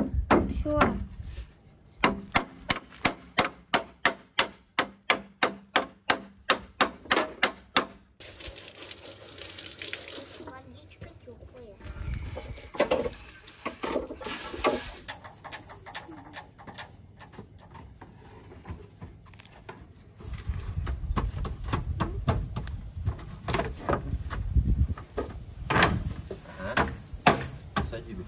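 A run of about fifteen evenly spaced knocks, some two and a half a second, then a few seconds of a power tool with a steady hiss. Later comes low rumbling noise with scattered knocks.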